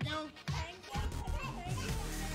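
Small children's excited voices and shouts over background dance music with a steady beat.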